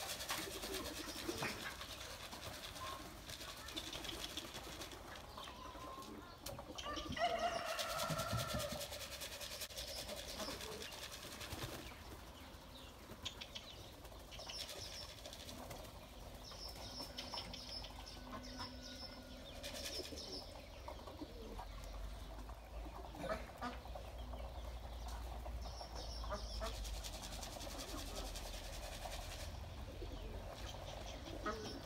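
Domestic pigeons around a backyard loft: wings flapping as a bird flies about, with scattered bird calls and high chirps in the background.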